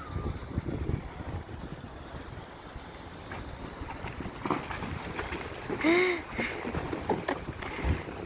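Wind buffeting the microphone, with a few dull thuds a little past the middle and one short rising-and-falling voice-like cry at about six seconds.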